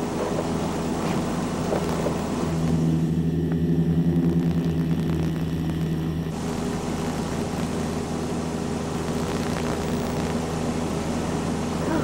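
Single-engine light aircraft's piston engine and propeller droning steadily, heard from inside the cabin while the plane struggles to climb for want of power, as the pilot puts it. For a few seconds in the middle the drone turns into a stronger, lower note with less hiss, as of the plane heard from outside, then the cabin sound returns.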